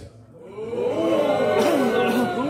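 A man's voice run through an electronic delay or harmoniser effect: several overlapping copies of a spoken phrase gliding up and down in pitch together, starting about half a second in after a brief gap.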